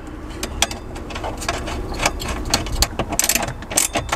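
Irregular clicks and rattles of a cable and a small hand tool being worked at the terminals of a Renogy charger on a wiring panel, over a low steady rumble.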